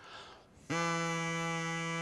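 Drinking-straw reed horn (a plastic straw flattened and trimmed at one end into a reed, lengthened with a second straw) blown to one steady note, starting under a second in and held for just over a second. The doubled length gives it a deeper note.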